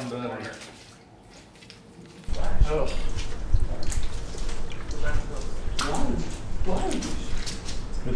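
Footsteps and scattered clicks as people walk through a hallway, with a low rumble of camera handling starting about two seconds in, and brief indistinct voices.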